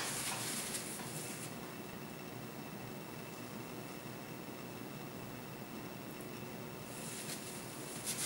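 Faint scratchy brushing of a paintbrush laying paint onto canvas, strongest about the first second and a half and again briefly near the end, over a steady faint hiss of room tone.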